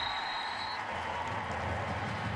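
Stadium crowd noise, a steady roar from the stands after a goal-line tackle, with a referee's whistle held high and steady that stops a little under a second in, blowing the play dead.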